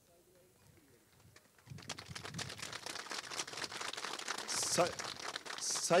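Crowd applauding. The clapping starts about two seconds in and builds, after a quiet stretch with faint voices.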